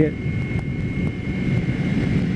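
Kawasaki Ninja 250R's parallel-twin engine on its stock exhaust, running steadily under way, with wind rushing over the microphone and a thin steady high whine.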